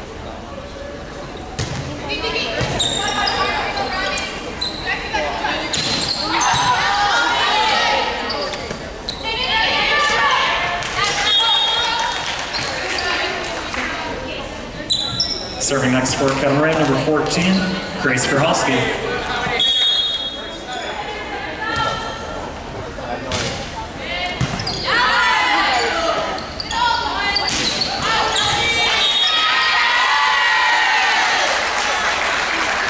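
A volleyball being struck again and again during a rally in an echoing gymnasium: sharp hits, each ringing in the hall, among shouting voices that grow louder near the end.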